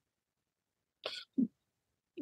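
Silence, then about a second in a short breathy throat sound from a person, followed at once by a quiet, brief spoken "yeah".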